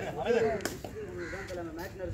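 Men's voices calling out during a kabaddi raid, a wavering held voice running on through, with one sharp slap or clap a little after half a second in.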